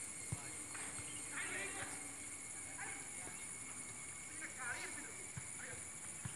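Faint, distant voices in short snatches over a steady high-pitched hiss, with a few soft low knocks.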